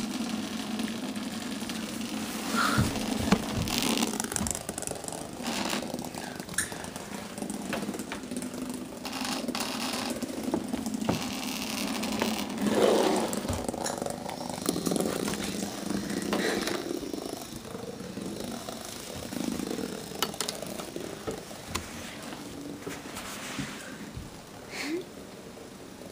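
A small battery toy's motor buzzing steadily, with scattered clicks, knocks and rattles throughout.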